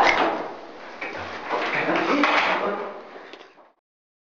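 A door being handled in a hotel corridor, with irregular clattering and rattling. The sound cuts off abruptly near the end.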